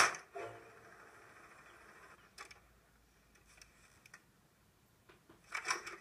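Quiet room tone: a faint steady hiss with a few soft clicks, then a short, louder unidentified sound just before the end.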